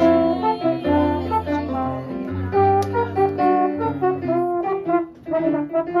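Live swing jazz: a trombone playing a melodic line over electric piano accompaniment.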